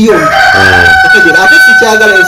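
A single long, steady bird call lasting about two seconds, falling slightly as it ends, with a man's voice faintly beneath it.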